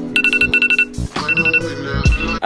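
iPhone timer alarm going off, the set timer having run out: rapid high-pitched beeping in repeated bursts, three bursts with short gaps between them.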